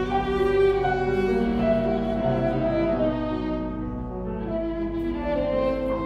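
Violin playing a classical melody in sustained bowed notes, with piano accompaniment, easing a little softer midway before swelling again.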